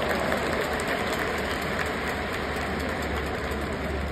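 Ambience inside a domed baseball stadium: a steady low hum under the murmur of a large crowd of spectators, with no distinct events.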